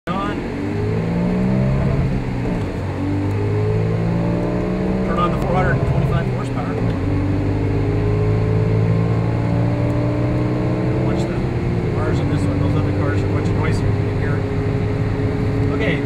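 Audi RS4's V8 engine heard from inside the cabin, accelerating through the gears: the note climbs, drops at an upshift and climbs again, with shifts about three, six and a half and twelve seconds in.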